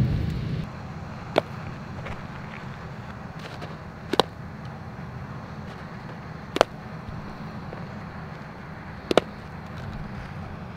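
A baseball popping into a leather fielding glove four times, about every two and a half seconds, two of the catches heard as a quick double knock, over a steady low background rumble.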